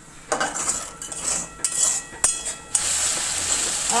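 Metal spatula scraping and clinking against an aluminium kadai as thick frying masala is stirred, a few sharp knocks in the first three seconds. Then, just before three seconds in, a steady frying sizzle.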